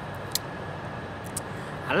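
Steady outdoor background noise with a faint steady hum, broken by a short click about a third of a second in and a fainter one later; a man's voice starts at the very end.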